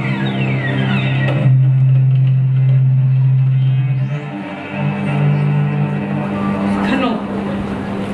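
Cello bowing long, held low notes in a live performance, one note sustained for a couple of seconds before a brief dip and another long note.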